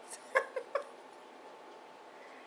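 Three short, high-pitched vocal sounds in quick succession in the first second.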